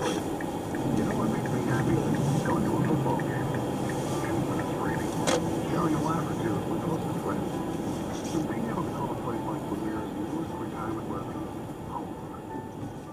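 Car radio playing indistinct talk in a moving car's cabin, over a steady rumble of engine and tyres, with a sharp click about five seconds in.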